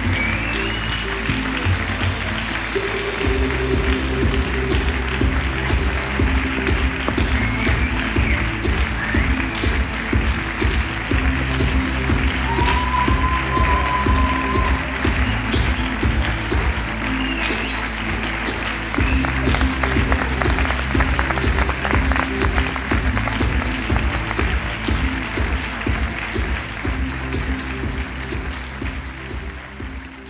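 Theatre audience applauding over music with a steady, repeating bass line, with a few short whistles. The music and applause fade out near the end.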